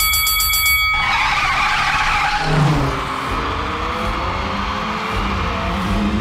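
Cartoon racing sound effects: a short, rapidly pulsing electronic tone in the first second, then mini race cars taking off with engine and tyre-skid sounds over background music.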